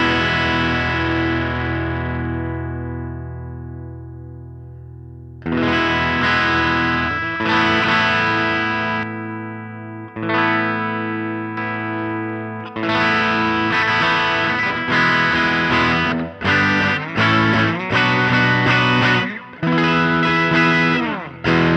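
Electric guitar played through a Kardian Serotonin Origin S.T. overdrive pedal, its drive knob turned down low, into a Roland JC amp model on an HX Stomp. A single chord rings and fades for about five seconds, then a run of strummed chords and short, choppy stabs follows with light overdrive.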